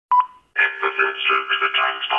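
A short electronic beep, then, about half a second in, the opening of a hardcore techno track, squeezed into a narrow, telephone-like band with steady tones and no bass.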